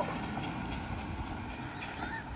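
A car driving away on a wet road, a steady tyre hiss that eases slightly as it goes.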